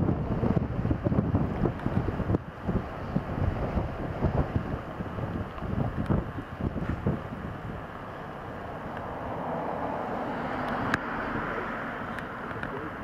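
Strong gusty wind buffeting the microphone. After about eight seconds it gives way to a steadier rushing noise that grows louder towards the end: the distant exhaust of Royal Scot class steam locomotive 46115 working hard uphill into a head wind.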